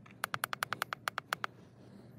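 Hand-held scan tool's keypad giving a fast run of about a dozen short beeps, around ten a second, as its menu selection scrolls down to the VLP counter reset.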